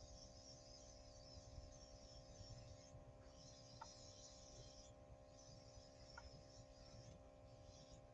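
Near silence: a faint steady hum, with a faint high hiss in two spells of about two seconds each in the second half, from an airbrush spraying blush.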